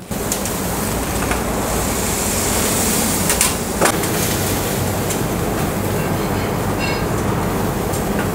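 Thick bone-in steaks sizzling on the grill of a Josper charcoal oven, a steady noise over a faint low hum. Metal tongs click against the grill twice about halfway through.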